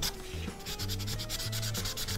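The wide felt chisel tip of a Krink K-75 paint marker rubbing across sketchbook paper in quick, repeated back-and-forth strokes, laying down a solid coat of paint.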